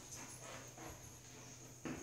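Chalk writing on a blackboard: faint scratches and taps as the letters are formed, with one sharper tap of the chalk shortly before the end.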